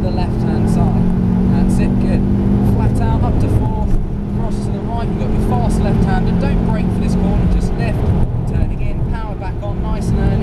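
Ford Focus RS's turbocharged engine pulling hard under full throttle, heard from inside the cabin over road and tyre rumble. The engine note holds steady, breaks briefly about four seconds in, and drops back for the last two seconds as the car comes off the power for the next corner.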